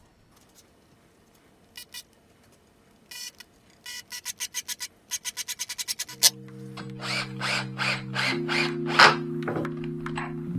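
Makita 18V cordless driver sinking pocket-hole screws into plywood: a couple of clicks, short bursts, then a run of rapid, evenly spaced clicks. About six seconds in, background music with held tones comes in over it.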